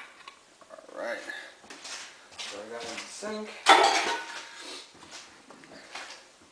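A table knife scrapes and clinks against a glass Pyrex baking dish as it is drawn through the pudding cake to finish the cuts. The loudest scrape is brief and comes a little past the middle. Short murmured voice sounds come in between.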